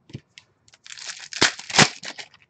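A trading card pack's wrapper being torn open and crinkled by hand: a few light clicks, then crinkling from about a second in, with two sharp rips near the end.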